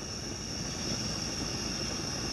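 Crickets trilling steadily in a high, unbroken band over a steady low rumble.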